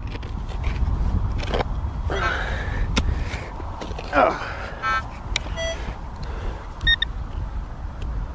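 A spade digging into wet, stony ploughed soil, with a few sharp clicks of the blade striking stones. Short vocal sounds of effort come between them. Past the middle, a few short electronic beeps from the metal-detecting gear.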